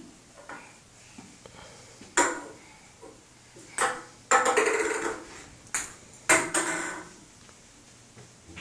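Five sharp knocks on a thin white metal rack, each with a short metallic ring; the longest rings for about a second near the middle.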